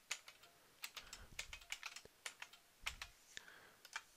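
Faint computer keyboard typing: irregular key clicks in short runs with brief pauses between them.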